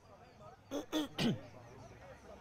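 A person clearing their throat: a few short bursts about three-quarters of a second in, the last one voiced and falling in pitch.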